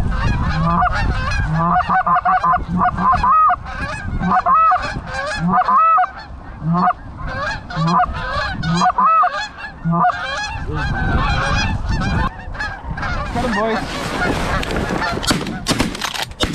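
A flock of geese honking continuously overhead, many overlapping calls. Shotgun shots crack out in the last half-second.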